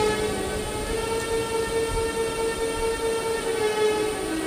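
Background music holding one steady, sustained note rich in overtones, like a drone under the talk.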